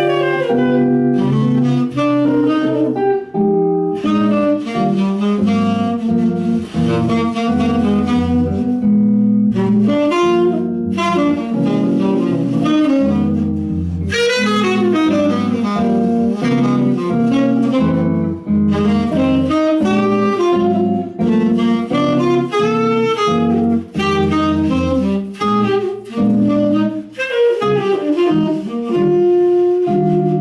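Live jazz duo: a tenor saxophone plays a flowing melodic line over a hollow-body electric guitar playing chords and low bass notes. Near the end the saxophone holds a long note.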